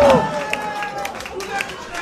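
A long, drawn-out ghostly wail from a person in a white sheet slides downward and stops just after the start, followed by quieter crowd chatter with a few sharp knocks.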